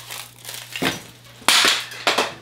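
Funko Soda can being twisted open, with short crunching crackles, then a loud sudden clatter about one and a half seconds in as the can falls and hits the floor.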